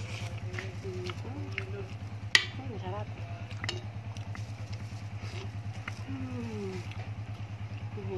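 A small engine idling nearby, a steady low hum with a fast, even pulse. A sharp clink about two and a half seconds in, typical of a metal spoon striking a plate.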